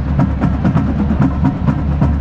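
Marching band playing, led by the drumline's fast, steady beat.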